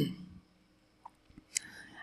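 A man's spoken word trailing off, then quiet room tone broken by a faint click about a second in and a short sharp click near the end, just before he speaks again.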